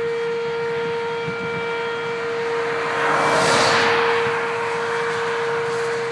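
Outdoor tornado warning siren sounding a steady tone. A vehicle passes on the highway about three and a half seconds in, its tyre noise swelling and fading.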